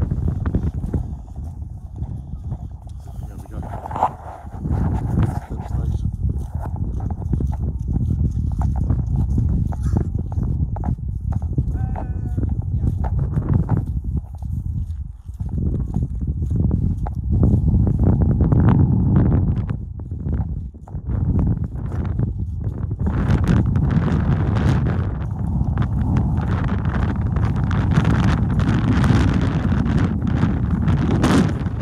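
Strong gusty wind buffeting the phone's microphone, a heavy low rumble that rises and falls, loudest in the second half.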